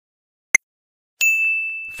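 A quiz countdown timer ticks once, a second after the previous tick. Then a bright bell-like ding chime sounds and rings on, fading slowly: the answer-reveal cue.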